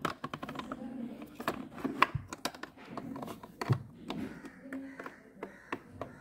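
Small plastic doll figure and plastic dollhouse parts clicking and tapping as a hand moves the figure through the toy house: a string of light, irregular clicks.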